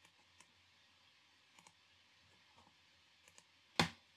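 Faint, scattered clicks of a computer mouse over quiet room tone, five or six single clicks a second or so apart. Near the end comes a short, louder burst from the lecturer's voice as he starts to speak.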